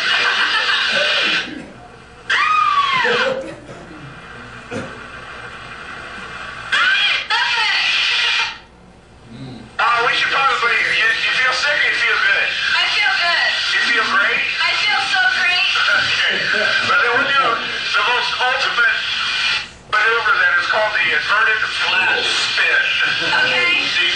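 Played-back soundtrack of an aerobatic cockpit video: voices talking and exclaiming over a steady rush of aircraft noise, with a few short dropouts where the sound cuts away.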